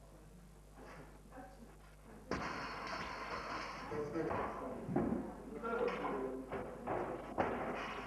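A loaded barbell dropped onto the wooden lifting platform with a heavy thud about two seconds in, followed by music and voices in the hall.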